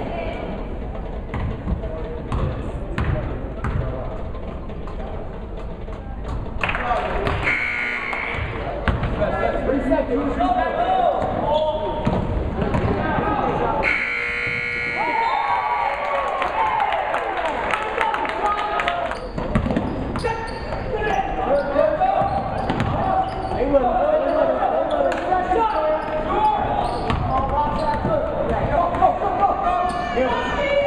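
Basketball game in a gymnasium: a ball bouncing on the hardwood court under constant crowd and player voices. About halfway through, a steady buzzer tone sounds, the end-of-quarter horn.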